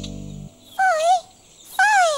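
A strummed guitar chord fades and stops about half a second in. Then a puppet character's voice gives two short, high cries that waver and fall in pitch, about a second apart, like whimpers.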